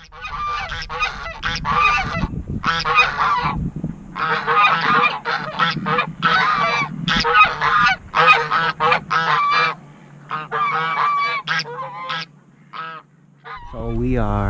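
Geese honking, many loud calls in quick succession, some overlapping, thinning out to a few scattered honks near the end. A low rumble runs under the first half of the calls.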